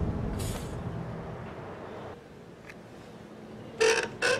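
A low rumble with a brief whoosh about half a second in, fading out over the first two seconds; near the end, a sharp metallic clink as a small iron-core transformer used as a choke coil is handled beside the subwoofer.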